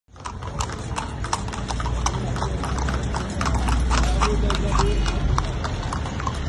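Horses' hooves clip-clopping on a paved road as horse-drawn carriages trot past, a quick run of sharp strikes several times a second, over a low rumble that swells about halfway through.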